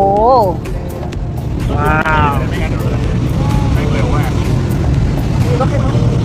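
Steady low rumble of a river tourist boat's engine, mixed with wind and water noise. It grows louder after the first second or so and then holds.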